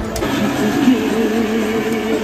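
Cotton candy machine running, its spinning motor giving a steady hum with a wavering tone over it.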